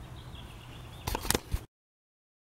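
Handling noise on a handheld camera: several sharp knocks and rubs a little over a second in, over a faint low background hum, then the sound cuts off suddenly to silence.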